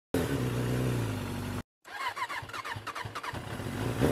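Vehicle engine: a steady low hum that cuts off abruptly about one and a half seconds in, then, after a brief silent gap, a quick run of repeated chirping pulses.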